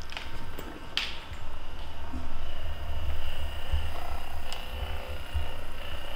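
Handheld percussion massage gun running with a low, pulsing hum as its head is pressed against a dog's head and neck.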